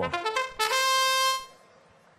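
Match-start fanfare from the competition field system, marking the start of the driver-control period: a quick run of short notes stepping up in pitch, ending on one long held note that cuts off about a second and a half in.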